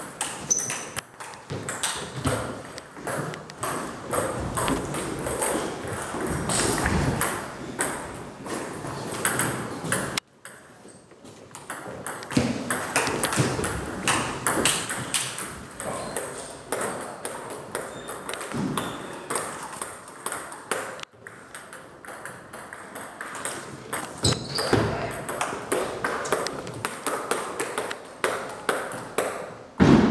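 Table tennis ball clicking back and forth between rubber-faced bats and a Joola table in fast rallies. The hits come as quick strings of sharp clicks, with short breaks between points about a third and two thirds of the way through.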